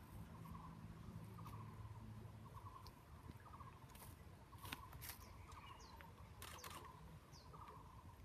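Near-silent outdoor ambience: a faint, short animal call repeating about once a second, with a few scattered soft clicks.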